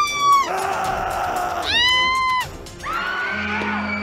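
High-pitched wailing cries in three long held notes, each sliding up at the start and down at the end, over background music.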